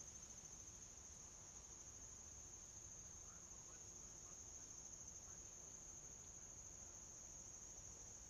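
Near silence except for a faint, steady, high-pitched insect chorus trilling without a break.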